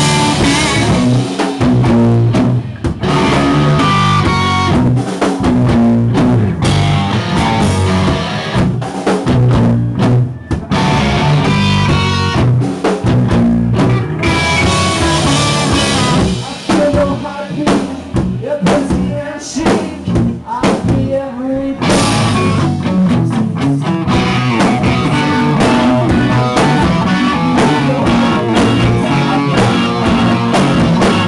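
Rock band playing live: electric guitar and drum kit, loud, with a few short stop-start breaks in the playing.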